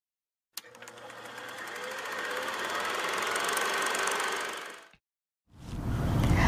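A fast, even mechanical rattle that starts with a click, swells over about three seconds and fades out near the end, followed by a low outdoor rumble.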